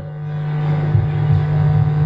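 A motor vehicle engine running, growing gradually louder, over a steady low hum.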